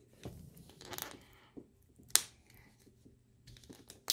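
Hands handling a Kinder Joy plastic egg half: faint rustling and small plastic clicks, with one sharp click about two seconds in.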